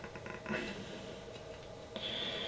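Glue stick rubbed across a glass 3D-printer build plate: faint rubbing with a few light ticks, and a slightly louder smear about half a second in.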